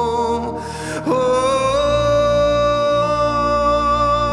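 Slow spontaneous worship music: a long held sung note, a short breath about half a second in, then a new note that slides in about a second in, steps up slightly and is held.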